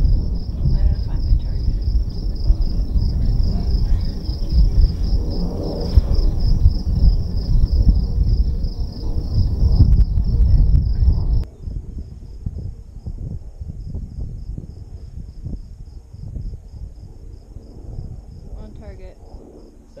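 Insects chirping in a steady, fast-pulsing high trill, over a loud low rumble. About eleven seconds in, the rumble drops away sharply and the chirping continues, thinner.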